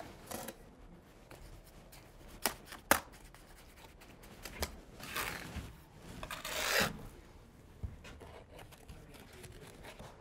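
A steel trowel scraping and scooping wet lime plaster on a plasterer's hawk, with a few sharp taps and two longer scrapes in the second half.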